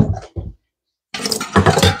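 Dog bowl knocked down on the edge of a utility sink: two sharp knocks in the first half-second, then a rattling, clattering stretch of handling noise in the second half.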